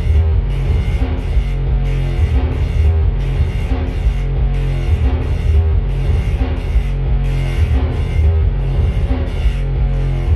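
Live band music from a drum kit and patched electronic instruments: loud and bass-heavy, with a steady, repeating rhythm.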